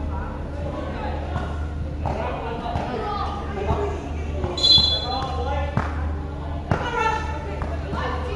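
Players' voices calling out on a basketball court, with a basketball bouncing sharply twice in the second half and a short high-pitched sound about five seconds in, over a steady low hum.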